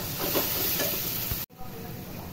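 Metal spatula stirring and scraping spice-coated chicken around a metal pan, with a frying sizzle. The sound cuts off suddenly about one and a half seconds in.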